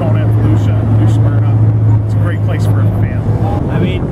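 A man speaking over a steady low engine hum, which fades out about three and a half seconds in.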